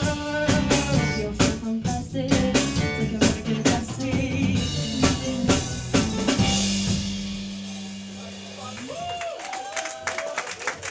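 Live rock band with a drum kit, bass, electric guitar and singers playing the close of a song. The drums stop about six and a half seconds in, leaving one held chord that dies away over the next two seconds.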